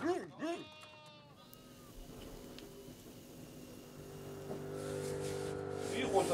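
Sheep bleating, quavering calls in the first second and a half, then a lull. Over the last two seconds several steady low tones build up.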